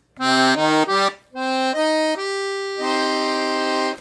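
Black Paolo Soprani piano accordion with three-voice (low, middle, high) treble reeds, played on the treble keys: a few quick notes, a brief pause, then longer notes ending in a held chord. It is a demonstration of one of its treble register settings.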